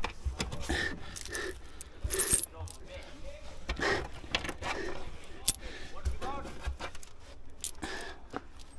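Loose coins clinking together in short, scattered clicks as they are gathered up by hand from a car's boot floor.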